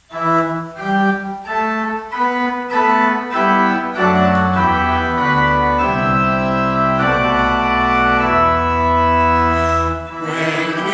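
Pipe organ playing: a line of quick held notes for the first few seconds, then long sustained chords with a low pedal bass coming in about four seconds in.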